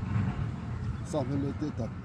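A man speaking in short phrases, with a steady low rumble underneath.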